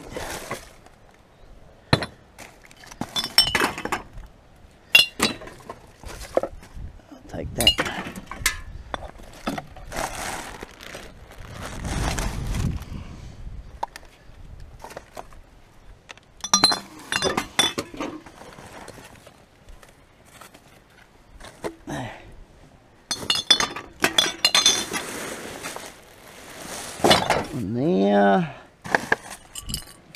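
Glass bottles clinking and knocking against each other as they are pulled out of rubbish and dropped among other empty bottles, in irregular clusters of sharp clinks with a short ring.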